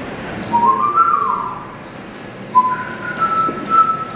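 A person whistling a tune in two short phrases of held notes that step upward in pitch.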